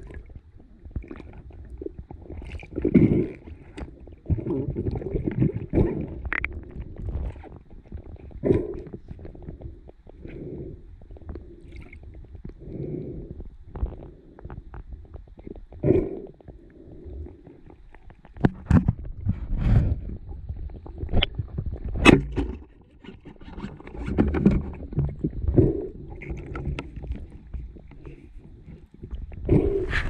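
Muffled water sloshing and knocking picked up underwater by a hand-held action camera in its waterproof housing as a freediver swims at the surface, coming in irregular surges. Scattered sharp clicks, the loudest a single crack about two-thirds of the way through.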